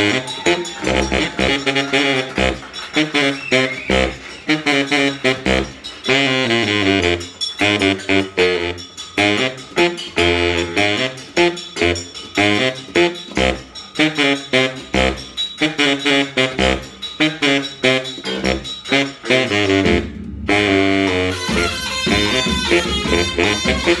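Baritone saxophone playing a fast, punchy riff of short repeated low notes. The music drops out briefly about 20 seconds in, then resumes with higher lines.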